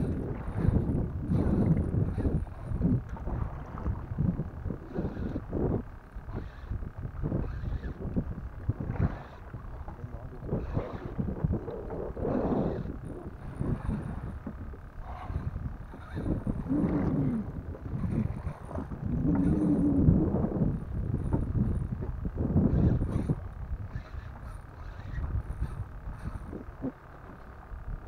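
Wind buffeting the microphone and choppy water slapping against a small boat, in irregular gusts and knocks, with a few faint voices.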